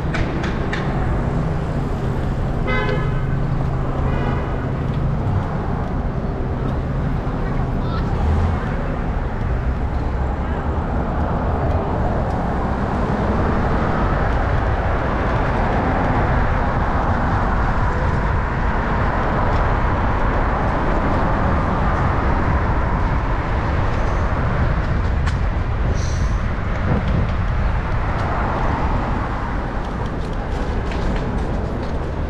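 City street traffic with a steady rumble of passing vehicles, and a car horn honking twice, about three and four seconds in.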